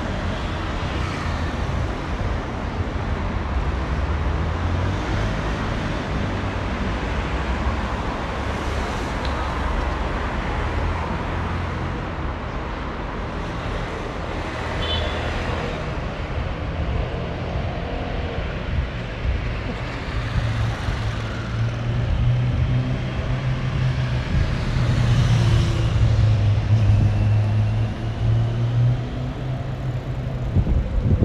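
City street traffic: a continuous rumble of car and scooter engines, with one engine's low hum growing louder in the second half.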